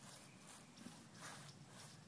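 Near silence: faint outdoor ambience.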